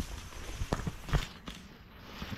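Footsteps pushing through tall dry grass: a few brushing, crunching steps with stems swishing against the legs.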